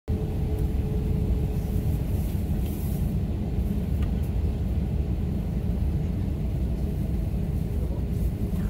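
Steady low rumble inside a jet airliner's cabin as the aircraft taxis on the ground, with a faint hum in the first couple of seconds.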